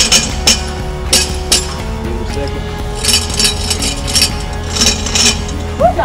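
Steel zip-line cable being tapped in a heartbeat rhythm, heard as paired sharp metallic clinks. Denser groups of clinks follow about three seconds in and again near the end, which fits the rhythm running down the line and coming back. A rhythm that returns the same is the sign that the far end of the cable is properly anchored.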